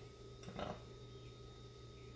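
Quiet room tone: a steady low hum with a faint thin steady tone above it, and a short, quiet spoken "No" about half a second in.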